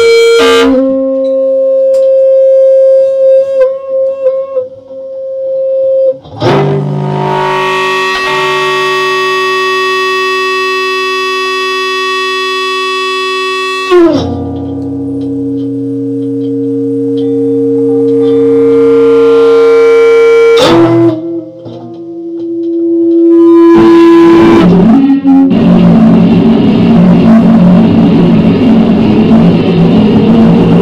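Amplified hollow-body electric guitar (Gibson ES-175D) played through effects as noise improvisation: held, distorted tones with rich overtones that switch abruptly to a new pitch every few seconds. Near the end it breaks into a dense, noisy distorted wash.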